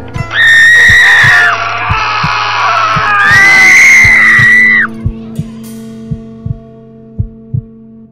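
Two long, high screams, one starting just after the start and a louder one from about three to nearly five seconds in, over a steady heartbeat-like thumping and a low drone from the haunted-passage soundtrack.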